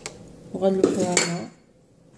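An aluminium cooking pot being moved across a granite countertop: about a second of loud metallic scraping and clattering with a ringing tone, starting about half a second in.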